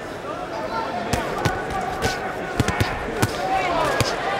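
Boxing arena crowd noise with voices calling out, and a series of sharp thuds of gloved punches landing, spread from about a second in to past three seconds.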